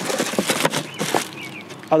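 Plastic wrapping crinkling and rustling as a bagged pushcart wheel is handled in a cardboard box, densest in the first second and then thinning out.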